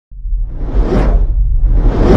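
Whoosh sound effect of a news bulletin's animated title sting, swelling to a peak about a second in over a deep rumble, with a second whoosh starting at the very end.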